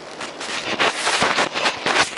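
Handling noise on a handheld phone's microphone: close rustling and crackling with many sharp clicks and scrapes as the phone is moved with its lens covered.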